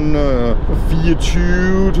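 A man's voice making drawn-out, hesitating sounds mid-sentence, over the steady low drone of a minibus on the move, heard from inside its cabin.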